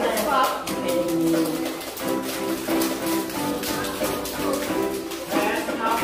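A children's song with a steady beat, a class of young children singing along and clapping.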